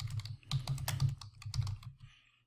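Computer keyboard being typed on: three quick runs of keystrokes with short pauses between them.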